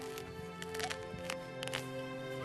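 Background music with sustained held notes, and a few sharp clicks over it.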